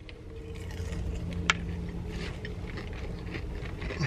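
Someone biting into and chewing a crispy breaded chicken tender, with faint crunching and one sharp click about a second and a half in, over a steady low hum in a car's cabin.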